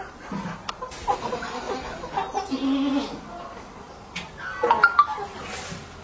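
Farmyard animal calls, mostly chickens clucking in short scattered calls, with a cluster of sharper, louder calls about five seconds in.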